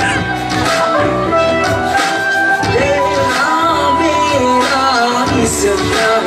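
Live pop song over stage speakers: a singing voice carrying a melody with held notes, over band backing with a steady bass.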